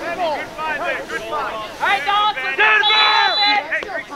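Crowd of sideline spectators talking and calling out over one another, with a steady high held tone for about half a second around three seconds in.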